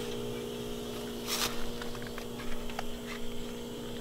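A steady low hum with a brief rustle about a second and a half in, followed by a few faint irregular clicks.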